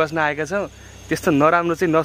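A man talking, with a faint, steady, high-pitched drone of insects underneath.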